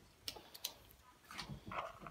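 A few faint clicks and taps of a metal flat-head screwdriver tip against the wheel's ball bearing and hub as it is set into the bearing to pry it out.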